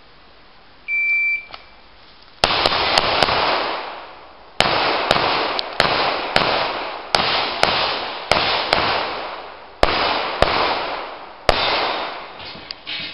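Shot timer's start beep, one short high tone about a second in, then pistol fire: a quick string of four shots, then about a dozen more roughly every half second, each with a short echoing decay.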